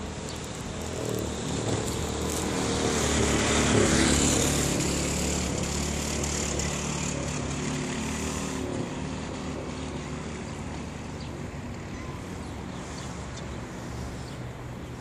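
A motor vehicle's engine in street traffic, passing by: it grows louder to about four seconds in, then slowly fades.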